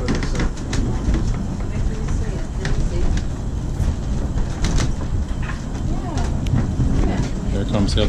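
Steady low rumble of the Duquesne Incline's cable-hauled funicular car riding down its rails, heard from inside the car, with scattered clicks and knocks from the running gear.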